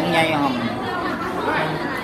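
Speech: a man talking, with other voices chattering around him.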